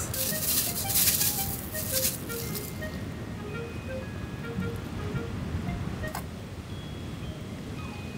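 A thin plastic bag crinkling and rustling for about two and a half seconds as pieces of pickled cucumber are tipped out of it into a steel cup, then light background music with short plucked-sounding notes.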